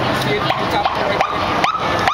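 Short rising siren whoops from a police motorcycle escort, about five in quick succession, some holding their pitch briefly, over the voices of a large crowd.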